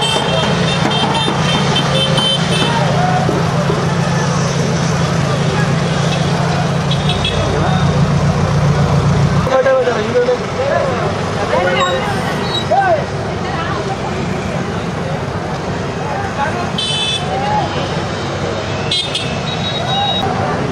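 Road traffic with people's voices and shouting: a vehicle engine running close by, its low hum cutting off suddenly about halfway, and vehicle horns tooting several times near the start and again near the end.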